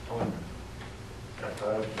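Meeting-room background with a short low sound about a quarter second in, then a man starts speaking near the end.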